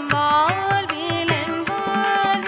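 A woman singing a Carnatic classical melody with sliding, wavering ornaments on her held notes. She is accompanied by regular strokes of a mridangam, the hand drum of Carnatic concerts, over a tanpura drone.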